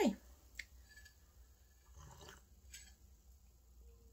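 Hot tea being sipped from a ceramic mug, faintly: a light click about half a second in, then soft sipping sounds around the middle.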